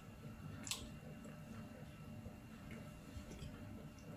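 Faint chewing of a soft homemade bun with small wet mouth sounds, and one sharper click under a second in.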